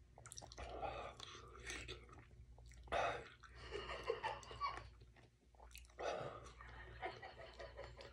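A man chewing a stale Paqui One Chip, the very hot chili tortilla chip, in irregular bursts of mouth noise with short crackles; the loudest bursts come about three and six seconds in.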